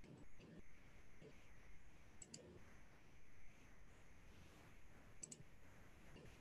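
Near silence with faint low murmuring, broken by two faint clicks about two and five seconds in, each a quick double click of a computer mouse.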